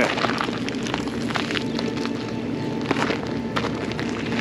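A paper pastry bag rustling, with scattered small crackles, over a steady low hum.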